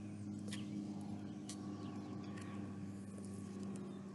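Quiet steady background hum with a couple of faint clicks as the stiff pages of a board book are handled.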